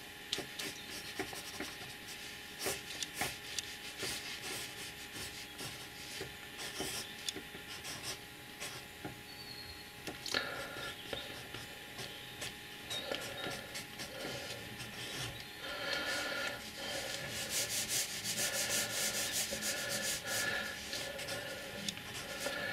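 Water-soluble pencil scratching and rubbing across a wetted sheet of paper in many short sketching strokes. The strokes come faster and a little louder in the last few seconds.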